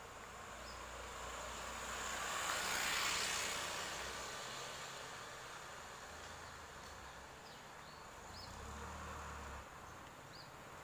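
A road vehicle passing close by, its noise rising to a peak about three seconds in and fading away, over a low steady engine rumble from the stationary diesel truck. A smaller swell of engine noise near the end stops abruptly, and a few faint bird chirps are heard.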